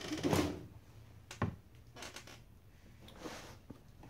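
Handling noises as a handbag is set aside and another is lifted out of a cardboard shipping box: a brief rustle at the start, a sharp knock about one and a half seconds in, then a few light ticks and soft rustling.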